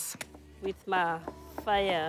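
A person's voice speaking, after a short lull at the start.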